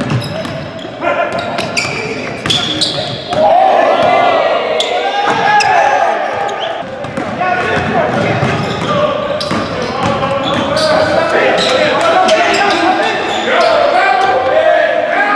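Basketballs bouncing on a hardwood gym floor during drills, sharp knocks echoing in a large hall, with players' and coaches' voices calling out over them.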